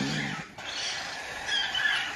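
Cockatiel chick making faint, high begging chirps while being hand-fed with a syringe, a little louder near the end.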